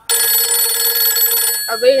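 Mobile phone ringing: a loud ringtone of many steady high tones that lasts about a second and a half and then stops abruptly, with a voice coming in near the end.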